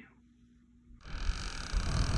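About a second of near silence, then loud outdoor noise cuts in suddenly: a steady rushing sound with a deep, uneven rumble.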